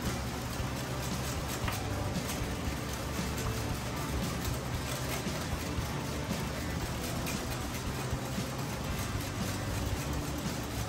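Wire whisk beating a runny egg-and-butter mixture in a glass bowl, with soft clicks of the wires against the glass, over steady background music.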